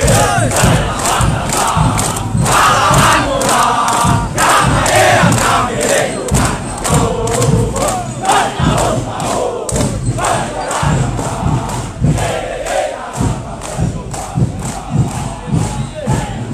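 Large group of soldiers chanting and shouting military yells (yel-yel) together, carried on a steady rhythmic beat of about two or three strikes a second.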